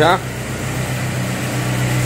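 Renault Kangoo van engine idling steadily with a low, even hum, left running for a while just after being started.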